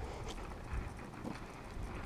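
Footsteps on asphalt: a few irregular sharp clicks over a steady low rumble.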